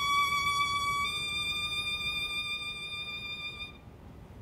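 Solo violin holding one high bowed note with a slight vibrato, the top of a piece that climbs from a low note to a high note. The note fades and stops shortly before the end.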